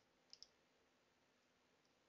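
Near silence broken by one faint computer click, a press and release a tenth of a second apart, about a third of a second in.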